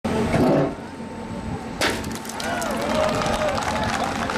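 Voices of people gathered outdoors, with a single sharp knock about two seconds in.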